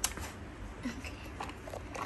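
Folding aluminium camping table being closed up: a handful of light clicks and knocks from its metal panels and frame.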